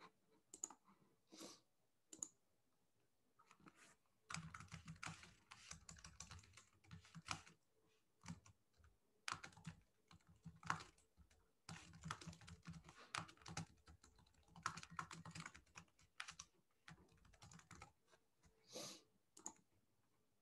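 Typing on a computer keyboard: a few scattered keystrokes, then runs of quick key clicks broken by short pauses. Faint.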